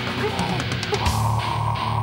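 A live heavy band playing: distorted electric guitars, bass and drums. About a second in, the cymbal hits fall away and a single high note is held steady.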